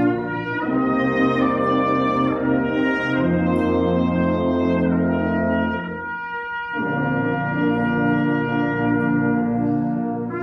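Concert band playing sustained, brass-led chords, with a brief drop in loudness about six seconds in before the full chord returns.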